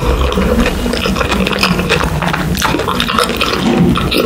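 Close-miked wet chewing of a mouthful of saucy food, a continuous run of squelching, smacking mouth noises.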